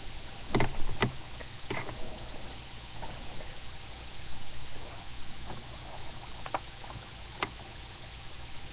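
Handling noise from a camera being picked up and moved: a few bumps and knocks, the loudest about a second in and single ones near the end, over a steady low hum and hiss.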